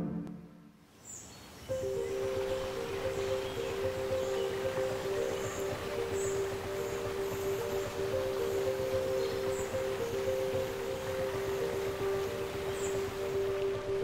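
Soft ambient music of a few long held notes, starting after a brief near-silent pause, over a steady outdoor background hiss with occasional short, high bird chirps.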